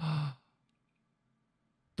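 A brief breathy sigh at the very start, with a faint voiced hum in it.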